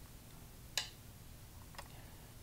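Two short, sharp clicks about a second apart, the first louder: an online Go board's stone-placement sound as the opponent's move lands.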